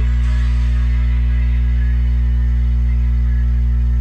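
Instrumental backing music of a slow gospel ballad between sung lines, with no voice: a steady, sustained deep tone under faint softer accompaniment.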